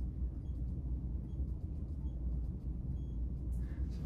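Steady low room hum, with faint short high beeps from a TonoVet Plus rebound tonometer repeating about every 0.8 s as it takes successive intraocular pressure readings on a dog's eye. The last beep, near the end, is longer.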